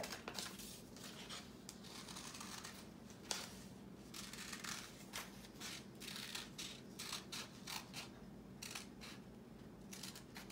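Small scissors snipping through a folded sheet of paper in a string of short, irregular cuts, faint.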